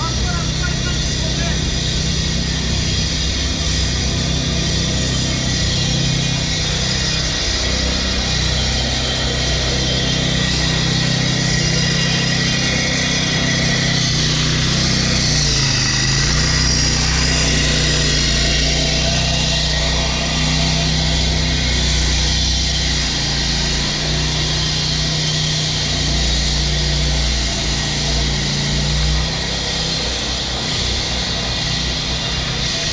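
A petrol vibratory plate compactor running on street paving works: a steady engine drone, loudest around the middle.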